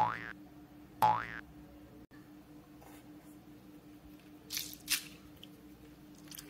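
Two cartoon "boing" sound effects, each a short springy note gliding upward in pitch, at the start and about a second in. Near the end come two brief crinkly rustles of hands picking up and squeezing a mesh-covered squishy stress ball.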